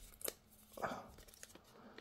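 Faint rustling and light clicks of Pokémon trading cards being slid against each other and sorted by hand.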